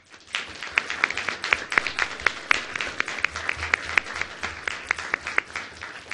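An audience applauding, starting just after the opening and continuing throughout, with a few individual claps standing out loud and sharp above the rest.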